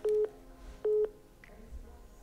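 iPhone call tone: two short beeps at the same pitch, a little under a second apart, as a FaceTime video call gives way to a voice call.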